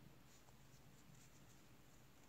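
Near silence, with faint scattered ticks and scratches of wooden knitting needles working yarn in seed stitch.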